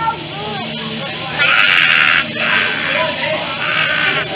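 Hot teppanyaki griddle hissing as liquid hits the steel and flashes to steam: a loud burst of sizzling about a second and a half in, lasting under a second, and a weaker one near the end, over people's voices.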